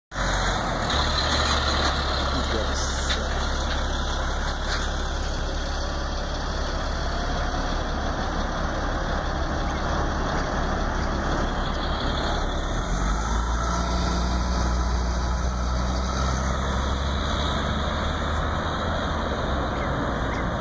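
A vehicle's engine idling with a steady low hum; a second steady low tone comes in about two-thirds of the way through.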